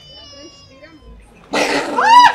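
A sudden loud, rough burst of noise about one and a half seconds in, followed right at the end by a loud, high, arching scream: a passer-by's fright at a scare prank, over quieter street voices.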